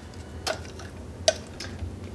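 Two light, sharp taps of kitchen utensils, a little under a second apart, as the last batter is scraped from a glass mixing bowl into a metal loaf pan and the bowl is set down.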